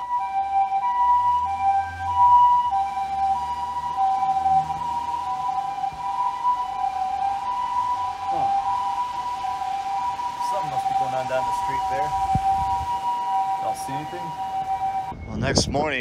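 Japanese ambulance's two-tone siren, steadily alternating a high and a low note as it passes along the street, over the hiss of heavy rain. The siren cuts off abruptly about a second before the end.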